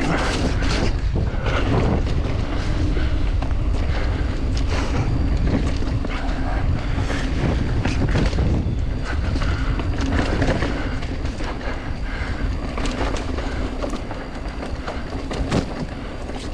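Mountain bike rolling along a dirt trail: wind rushing over the camera microphone, with tyre rumble and frequent clicks and rattles from the bike over bumps.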